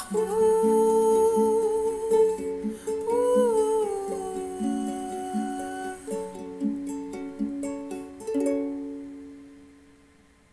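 Soprano ukulele playing with a wordless hummed melody held over it for the first six seconds or so, then a few plucked notes and a final chord about eight seconds in that rings out and fades away.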